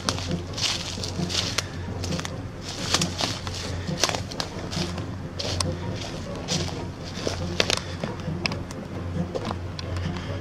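Footsteps crunching through dry leaf litter and twigs at an irregular walking pace, over a steady low hum.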